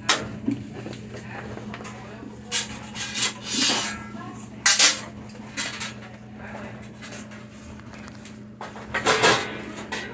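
Front-loading Whirlpool washer running a steady low hum at the start of its cycle, with household items clattering and knocking a few times: once at the start, a cluster a few seconds in, and again near the end.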